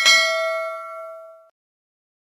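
Notification-bell 'ding' sound effect of a subscribe-button animation: one bright bell strike, right after a short click, ringing with several overtones and fading out over about a second and a half.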